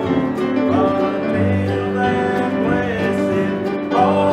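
Live bluegrass-style gospel playing: acoustic guitar, mandolin and upright bass, with a man singing the lead line.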